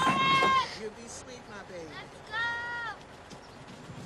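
Film soundtrack with two long, high-pitched held calls from a voice, one at the start and one about two and a half seconds in, and quieter talk between them.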